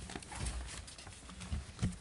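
Scattered light clicks and taps of things being handled at a meeting table, over low room rumble, with a sharper click near the end.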